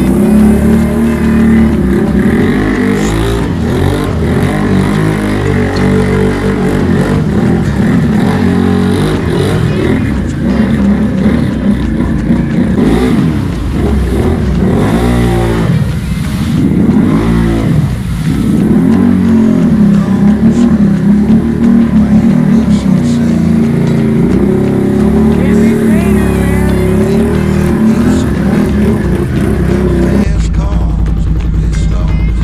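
Can-Am Renegade X-MR 1000R's V-twin engine revving hard as the ATV drives through a deep mud hole, its tyres throwing mud and water. The engine note rises and falls repeatedly in the middle of the run.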